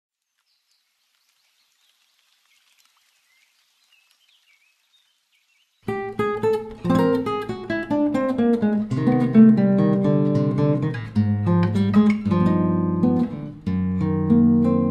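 About six seconds of near silence, then a nylon-string classical guitar starts playing a solo choro, plucked melody lines over bass notes.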